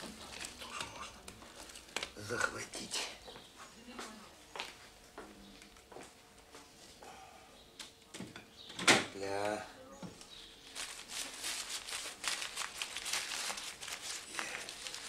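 Aluminium foil crinkling and rustling as a wrapped packet is handled, with a dense run of fine crackle in the last few seconds. There are scattered small kitchen knocks, and one short voice-like sound comes about nine seconds in.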